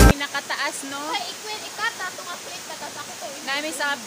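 A small waterfall rushing steadily into a pool, under a man's speech.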